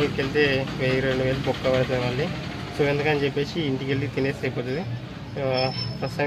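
A man talking in short phrases, with a steady low engine hum underneath.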